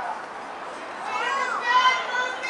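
High-pitched shouted calls from young female voices at a soccer game, quieter at first. About a second in comes one long call that rises and falls in pitch, followed by another.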